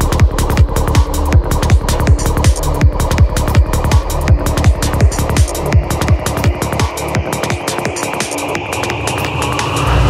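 Dark progressive psytrance: a steady four-on-the-floor kick and rolling bassline under fast hi-hats. About seven seconds in, the kick and bass drop away while a rising sweep builds.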